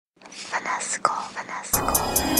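A whispered voice opens the track, then the hip-hop beat comes in abruptly near the end.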